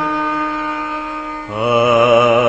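A man's voice chanting a Hindu mantra in a slow, drawn-out melody. A long held note fades, and a new note with a wavering pitch starts about a second and a half in.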